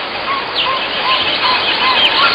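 Birds calling: a steady run of short rising-and-falling notes, about three a second, with a few higher, quick downward chirps, over a noisy background hiss.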